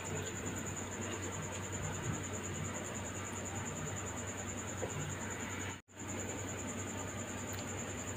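Faint steady hiss with a thin, high-pitched steady whine and a low hum underneath. All of it cuts out briefly about six seconds in.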